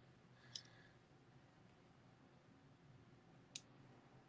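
Near silence: room tone, broken by two faint clicks, one about half a second in and one near the end.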